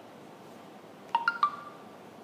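A quick three-note electronic chime about a second in: three short notes of different pitch, each starting sharply and ringing briefly.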